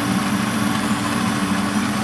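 Gas torch flame burning steadily, a continuous rushing hiss, over a steady low hum.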